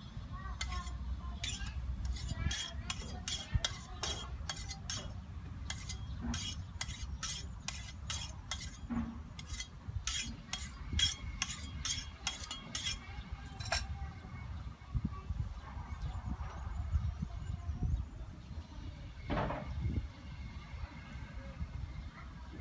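Kitchen knife clinking in quick light strokes, about two a second for the first fourteen seconds, then only now and then, over a steady low rumble. Near the end the knife is cutting on a wooden chopping board.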